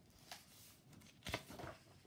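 A picture book handled and a page turned: faint paper rustles, with a sharper flap of the page about a second and a quarter in.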